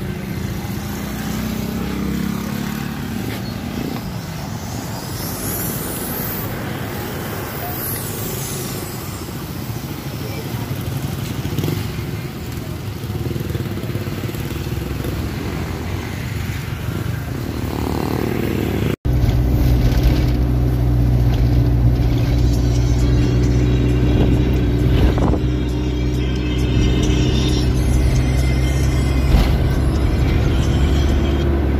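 Roadside traffic ambience, then after a sudden cut about two-thirds of the way in, a vehicle engine running steadily, heard from inside the cab of a moving vehicle.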